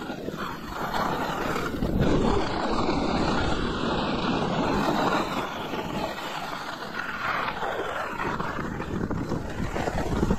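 Wind rushing over the microphone and skis sliding over groomed snow on a downhill run, a steady noisy rush.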